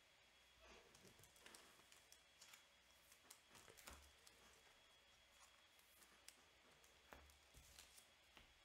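Near silence with faint, scattered clicks and soft handling noises.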